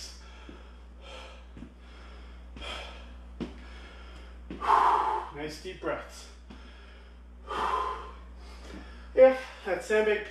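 A man breathing hard after an exercise set: short, loud exhalations about once a second, with two longer, heavier breaths in the middle.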